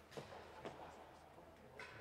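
Near silence with a few faint knocks about a quarter and two-thirds of a second in, and a brief scuff near the end.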